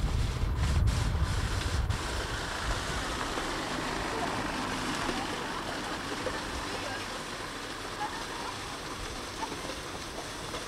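Steady rushing outdoor noise on a camcorder microphone, with a heavy low rumble in the first two seconds that then settles to an even hiss.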